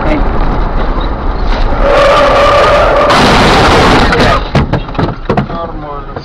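Road noise in a moving car. About two seconds in, a loud held screech with a steady pitch begins. After a second it turns into a loud rushing noise that lasts over a second, and then come a few sharp knocks, typical of a car skidding on the road.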